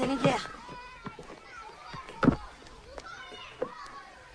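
Children's voices in the background of a schoolyard, with one sharp thump about two seconds in.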